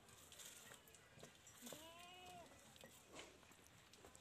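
Quiet farmyard with one faint, distant bleat from a young farm animal near the middle, rising and then falling in pitch and lasting under a second, among a few soft clicks.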